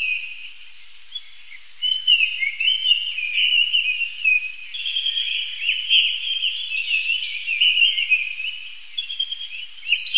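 Small birds chirping and twittering in quick, overlapping high notes: thin at first, then a continuous run of song from about two seconds in.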